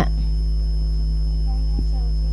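Steady low electrical mains hum on the microphone and sound-system audio, with a faint click near the end.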